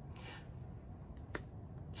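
Quiet room tone in a pause between speech, with a soft hiss near the start and a single sharp click a little past halfway.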